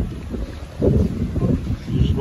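Wind buffeting the microphone: an irregular low rumble that swells about a second in.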